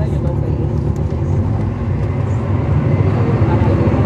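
The Cummins ISL9 inline-six diesel of a 2011 NABI 416.15 transit bus, heard from inside the cabin while the bus is under way. It gives a steady low drone that grows somewhat louder over the second half.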